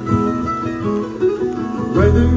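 Bluegrass band playing an instrumental passage between sung lines: acoustic guitar, mandolin and electric bass guitar picking together at a steady tempo.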